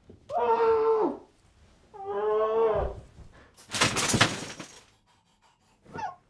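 A woman's voice wailing in two long, drawn-out cries, like exaggerated crying, followed about a second later by a loud, harsh rasping noise lasting about a second.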